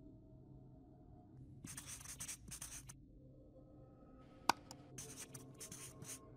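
Marker-on-board writing sound effect: two runs of short scratchy strokes, the first about a second and a half in and the second from about four seconds, with a single sharp click between them, all faint.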